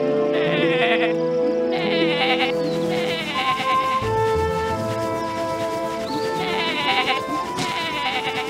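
Cartoon sheep bleating in short quavering calls, four times, over steady background music.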